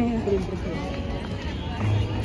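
Outdoor crowd ambience: many people talking indistinctly over a low background hum, with a held voice or tune falling away in the first half second.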